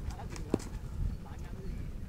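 A single sharp, hollow knock about halfway through, over a steady low rumble of wind on the microphone, with faint distant voices.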